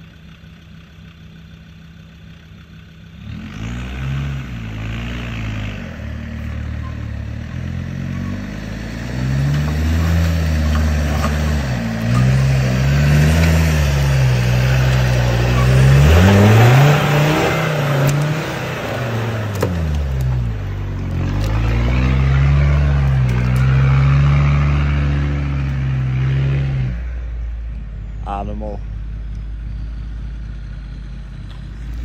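Land Rover diesel 4x4 engine revving hard under load on a steep off-road hill climb. It starts about three seconds in, its pitch rising and falling over and over, loudest a little past halfway, then drops back to a low idle near the end.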